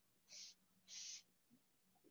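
Felt-tip marker drawing short dashes on a paper flip-chart pad: two faint strokes about half a second apart, the second a little longer.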